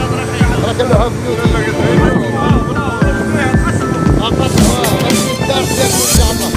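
Background music with a steady beat, about two beats a second, and a vocal line over it.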